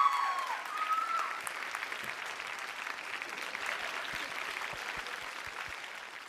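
Studio audience applauding after a dance routine, with a few held shouts from the crowd in the first second or so; the clapping thins out near the end.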